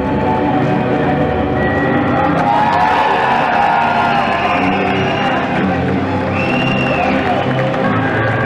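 Music playing loudly and steadily, with a crowd cheering and whooping over it in a large hall.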